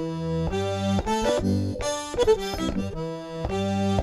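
Zydeco accordion playing a run of sustained chords over bass notes in a quieter, sparse passage of the tune, the chord changing every half second or so.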